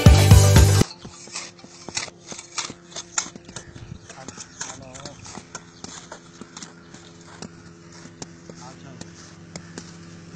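Background music cuts off about a second in; then scattered, irregular light knocks and clicks from outdoor work, with faint voices now and then.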